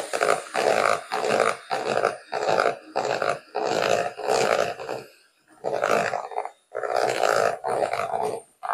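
Electric hand mixer beating thick cake batter in a plastic bowl. Its motor comes and goes in quick surges, about two a second, with a few short gaps near the end.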